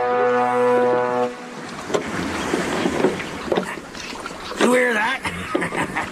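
A sustained orchestral chord from the drama's score ends about a second in. It gives way to a washing water sound with scattered knocks, and a short wavering voice-like cry near the five-second mark.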